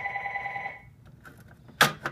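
A telephone ringing with a steady, rapidly warbling electronic ring that stops under a second in. A sharp click follows near the end.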